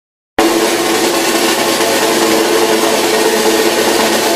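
A sound effect: a loud, steady rushing noise with a low hum in it, starting suddenly after silence about half a second in.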